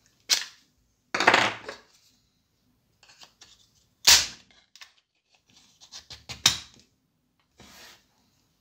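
3D-printed plastic compensator being handled and pushed onto the accessory rail of an airsoft pistol. Sharp plastic clicks and knocks, with a short scrape a little over a second in, the loudest click about four seconds in, and a quick run of clicks near six seconds.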